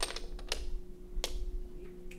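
Domino blocks clacking against each other and the stage floor: a quick cluster of clicks at the start, then single clacks about half a second and a second and a quarter in, over a faint steady hum.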